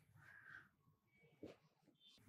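Near silence: room tone, with two faint brief sounds, about half a second in and again near a second and a half in.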